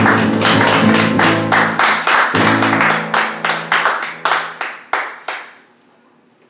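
Acoustic guitar and upright double bass playing the last bars of a piece together: quick repeated guitar strums over low sustained bass notes. The bass stops a little before five seconds in, and the strums die away soon after.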